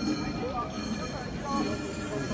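Busy outdoor street sound of a festival float procession passing: a steady crowd bed with voices and several short, squeaky gliding calls or creaks scattered through it.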